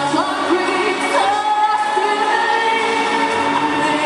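A teenage girl singing into a handheld microphone over music, bending the pitch at first and then holding one long note from about a second in.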